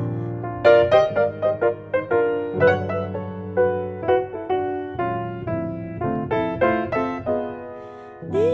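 Grand piano played solo in a slow jazz ballad: a run of single notes over held chords, fading away near the end.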